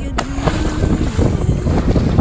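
Wind buffeting the microphone on an open boat deck as a heavy, steady rumble, with lapping water, and a splash near the end as a snorkeler jumps into the sea.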